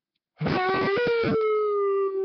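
A man's long, loud excited yell, a drawn-out "Aaaall" that steps up in pitch about halfway and is then held on one note, celebrating a big card pull.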